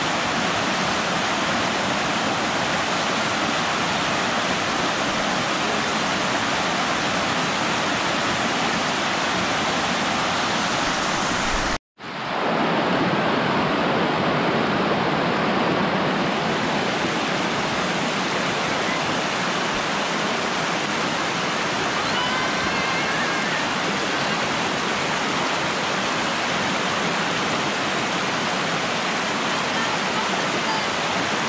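Rushing water of a shallow cascade pouring in sheets over smooth sandstone ledges, a steady unbroken rush. It cuts out for an instant about twelve seconds in and resumes at once.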